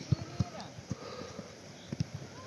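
Footballs being kicked on a grass pitch: a run of irregular dull thuds, about five in two seconds.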